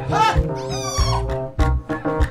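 Upbeat gospel band music with keyboards, bass guitar and a steady kick-drum beat. In the first second, two short, high squeals bend up and down in pitch over the music.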